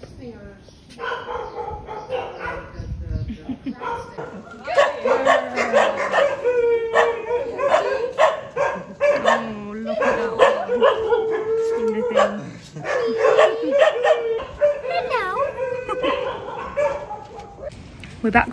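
Dogs barking over and over from about four seconds in, some calls short and some drawn out into longer cries.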